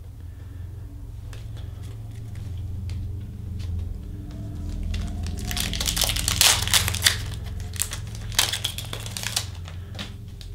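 A foil trading-card pack wrapper being torn open and crinkled, in two loud crackly bouts in the second half, with light clicks of cards being handled before.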